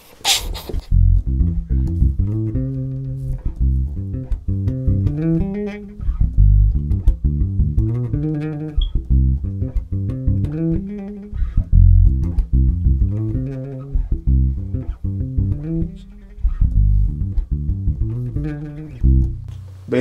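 Electric bass guitar playing a pre-chorus bassline of held notes shaken with vibrato, in short phrases with brief stops between them.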